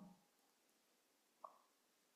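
Near silence: room tone in a pause of speech, the last of a man's voice fading in the first moment, and one brief, faint pop about one and a half seconds in.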